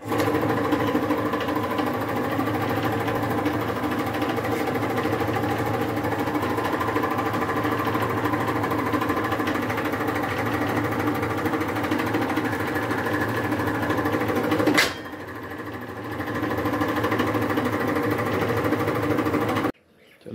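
Hydraulic press pump and motor running steadily with a whine as the ram presses down. About three-quarters of the way through there is one sharp click, after which the sound drops for about a second and then picks up again. The sound cuts off suddenly near the end.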